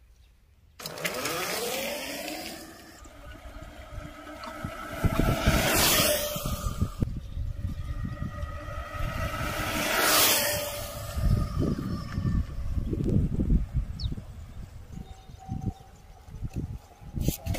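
Small electric motor of a homemade e-bike whining and rising in pitch as the bike pulls away, starting suddenly about a second in. Later come two loud whooshes, around five to six and ten seconds in, over an uneven low rumble.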